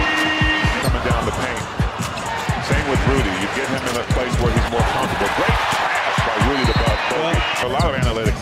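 Basketball game sound in an arena: a ball being dribbled on the hardwood court, a long run of short low thumps, over steady crowd noise, with music playing underneath.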